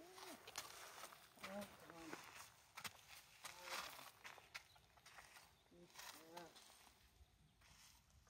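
Near silence with a soft, low voice murmuring a few short phrases and scattered steps on gravel from a person and a horse walking.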